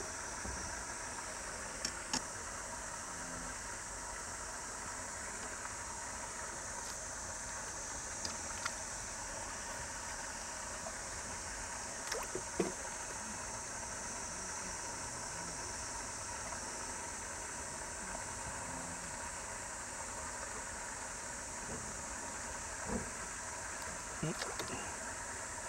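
Quiet, steady outdoor background hiss with a high, even drone, broken by a few faint short clicks, around two seconds in, near the middle and near the end.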